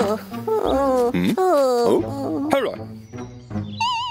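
A cartoon character's wordless voice making a series of pitched sounds that slide down in pitch, over background music. A wobbling, warbling tone comes in near the end.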